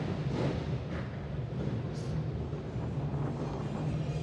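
A steady low engine drone under a haze of street background noise.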